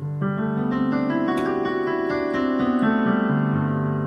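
Electronic keyboard with a piano voice playing an arpeggiated ballad figure on G, an octave with an added fifth. The notes step upward over a sustained low bass note, then settle back down.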